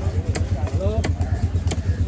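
Cleaver chopping fish into chunks on a wooden block: three sharp strikes about two-thirds of a second apart. Under them runs a steady low engine hum, the loudest sound throughout.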